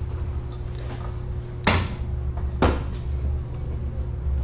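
Two sharp knocks about a second apart, over a steady low hum.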